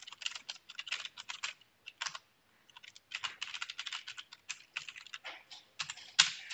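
Typing on a computer keyboard: quick runs of keystrokes, with a short pause about two seconds in before the typing resumes.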